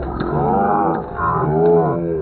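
Several voices shouting and yelling in long cries that rise and fall in pitch, the excited shouting of kabaddi players and spectators as a raider is tackled.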